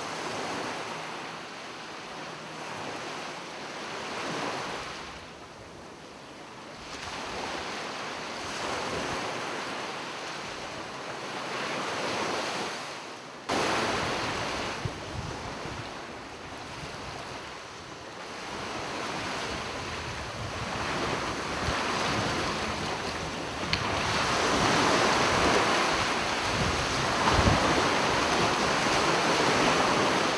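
Ocean surf washing in under a pier, rising and falling every few seconds, with wind buffeting the microphone. The sound changes abruptly about a third of the way in and grows louder near the end.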